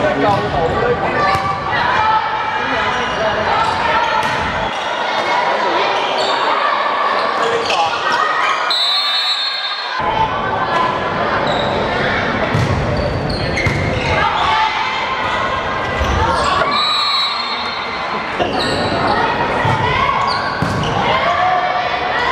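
Indoor volleyball play in an echoing sports hall: players' voices calling and shouting over repeated sharp thuds of the ball being struck. Two short, high whistle blasts cut in, about 9 seconds in and again about 17 seconds in.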